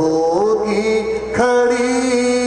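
A man's voice chanting a devotional poem in long, held melodic notes through a microphone and loudspeakers, sliding upward shortly after the start and taking up a new held note about a second and a half in.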